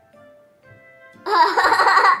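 Quiet background music, then about a second in a young girl bursts into loud giggling laughter that lasts under a second.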